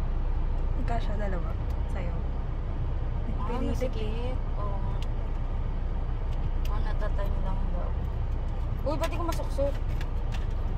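Steady low rumble of a running car heard from inside the cabin, with a few soft snatches of voices over it.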